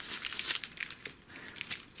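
Plastic sweet wrappers crinkling inside a folded microfiber cloth as it is handled and opened: a quick run of crackles that thins out after about a second, with a few more near the end.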